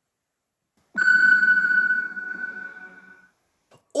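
A single electronic ping-like tone with a lower hum beneath it. It starts suddenly about a second in and fades away over about two seconds, like a transition sound effect between sections.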